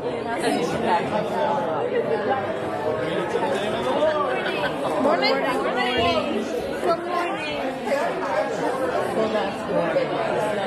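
Congregation greeting and chatting with one another: many voices talking at once, overlapping, with no single voice clear.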